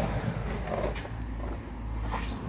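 Steady low engine rumble under outdoor background noise.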